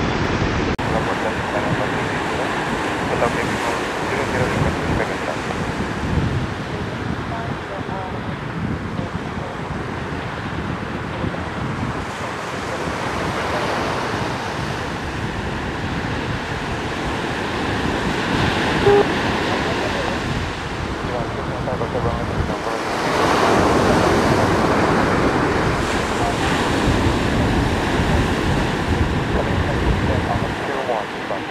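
Sea surf washing ashore with wind buffeting the microphone, a steady rushing noise that swells louder a little over two-thirds of the way through.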